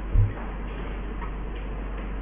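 A single short, low thump about a quarter second in, over a steady low hum, followed by a few faint ticks.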